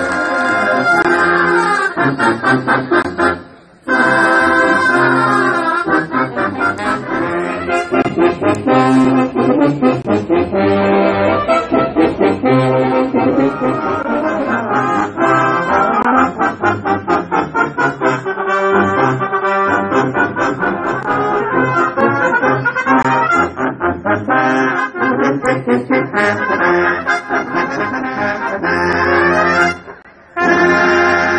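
Brass band playing a march in the open air, trombones prominent, with a steady beat. The music breaks off briefly about three and a half seconds in, then carries on.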